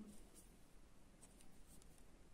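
Near silence, with a few faint, soft scratches of a sewing needle and thread being drawn through needle lace.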